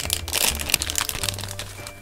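Crinkly plastic blind-bag packet being torn open and handled: a rapid run of crackles, busiest in the first second and thinning near the end, over background music.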